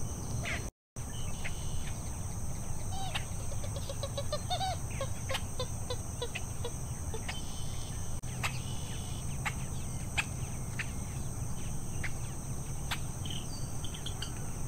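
Marsh ambience: a steady high-pitched insect drone with scattered short bird calls and chips, and a run of low, evenly spaced bird notes, a few a second, from about three to seven seconds in. The sound drops out briefly about a second in.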